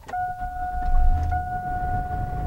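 Car ignition key turned with a click, the engine starting and running with a low rumble, while a steady high-pitched dashboard warning tone sounds throughout.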